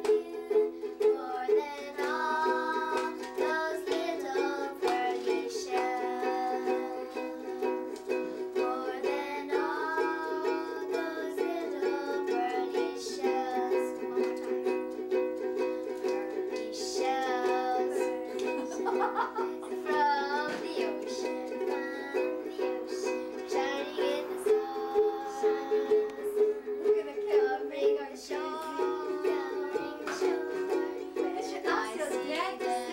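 A ukulele strummed in a steady rhythm, with two young girls singing a song along to it.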